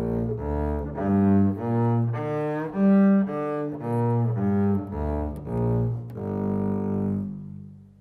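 Double bass played with the bow: a G minor arpeggio, about half a second per note, climbing to its highest and loudest note about three seconds in, then coming back down. It ends on a long held low note that fades out near the end.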